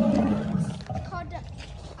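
Roar played by an animatronic Alioramus dinosaur, loud at the start and tailing off within about half a second.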